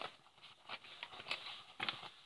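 A pencil being put into a zip-up pencil case: a few light taps and clicks with soft rustling of the case as it is handled.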